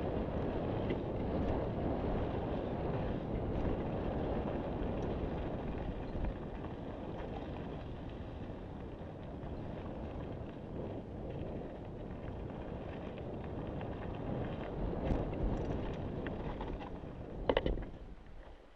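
Mountain bike ridden fast along a dirt singletrack: wind buffeting the camera microphone over the rumble of tyres on the trail, with a brief clatter of the bike over rough ground near the end.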